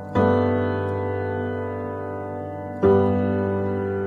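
Slow background piano music: sustained chords struck twice, about two and a half seconds apart, each ringing and slowly fading.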